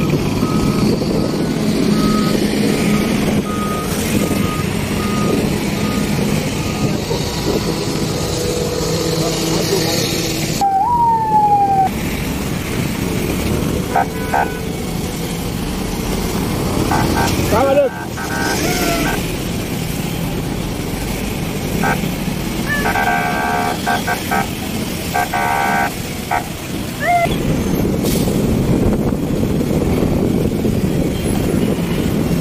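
Road traffic in slow, congested flow: a steady rumble of truck and car engines and tyres, heard from within the traffic. A run of short, evenly spaced beeps sounds in the first few seconds, and several brief higher-pitched tones come later.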